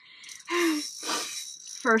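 A woman's excited, breathy gasping and half-whispered exclamations, with a short voiced sound about half a second in, running into speech near the end.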